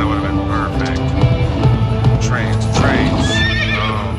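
Konami All Aboard slot machine playing its bonus music, with a wavering horse-whinny sound effect about three seconds in as the reels stop on the horse symbols.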